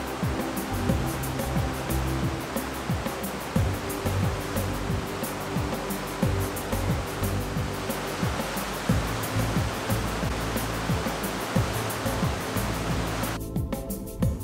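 Background music with a steady beat over the rushing of a fast-flowing flooded creek, its water running high from storm runoff and snowmelt. The water sound cuts off near the end, leaving the music alone.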